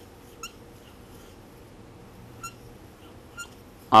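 Dry-erase marker squeaking on a whiteboard while writing: three short, high squeaks, about half a second in, past the middle and near the end.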